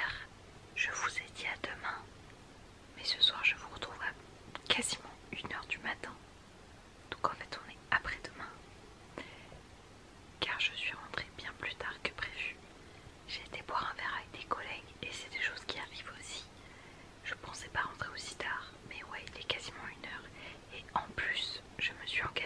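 A woman whispering in French, in short phrases with brief pauses between them.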